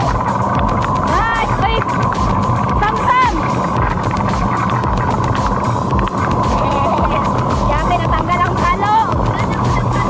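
Steady rush of wind on the microphone and small plastic wheels rumbling over wet pavement as a downhill cart rolls along the track, with a few short high squeals.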